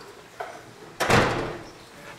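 A single sharp thump about a second in, fading quickly, with a faint click shortly before it.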